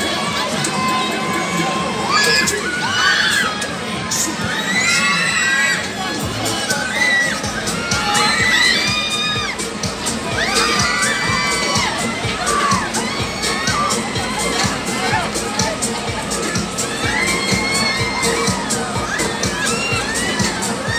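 Riders on a swinging fairground ride screaming and shouting together, many overlapping high cries that rise and fall.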